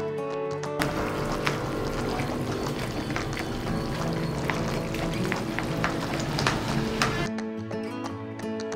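Background music throughout. From about a second in until shortly before the end, a wooden spoon stirs and mashes thick, wet vadakari gravy in a nonstick frying pan, a wet churning noise with scattered clicks of the spoon against the pan.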